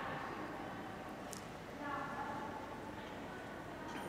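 Low background noise of a large indoor hall, with faint distant voices about halfway through.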